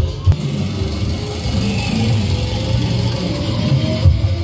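Loud electronic dance music with a heavy bass beat. The beat drops out just after the start, leaving a sustained passage with a slowly rising tone, and comes back at the very end.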